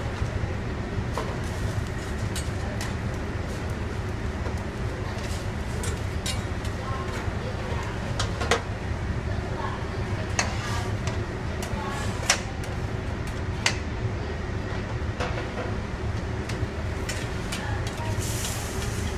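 Steady low rumble of a busy kitchen with a gas burner on high flame, broken by scattered sharp clacks as lobster shells knock against a stainless steel pan and the stockpot while the lobsters are dropped into boiling water.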